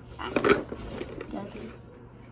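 A short sharp crackle about half a second in as a small perforated cardboard door on a toy box is pushed open, followed by faint handling of the box.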